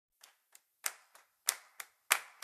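Quiet, sharp percussion strokes opening a maloya song, about three a second with every other stroke louder, like hand claps.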